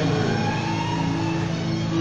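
Electronic keyboard holding a sustained chord, a steady organ-like pad with no beat.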